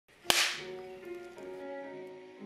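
A clapperboard snaps shut once, a sharp clap about a third of a second in. Music with held notes follows.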